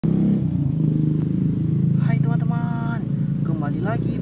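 A steady low motor drone runs throughout. From about two seconds in, a voice calls out drawn-out sounds over it.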